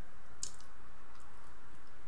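Wet mouth sounds of chewing a forkful of scrambled eggs: one sharp smack about half a second in and a fainter one later, over a steady background hiss.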